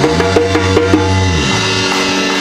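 Live rock band playing loud: drum kit, electric bass and electric guitars over sustained chords, with a quick run of evenly spaced drum hits, about five a second, through the first second.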